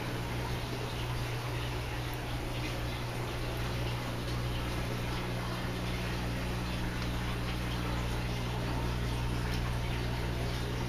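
Steady trickle and splash of water running from an aquaponics grow bed back into the fish tank, over a steady low electrical hum.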